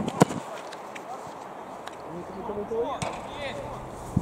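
A football kicked hard, aimed at the crossbar: one sharp thud of boot on ball a moment in. Faint voices follow.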